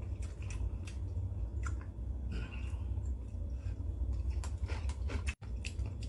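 A person chewing ramen and kimchi with irregular wet mouth clicks and smacks. These are the 쩝쩝 lip-smacking sounds he says he is trying to cut down but finds hard to stop. A steady low hum runs underneath.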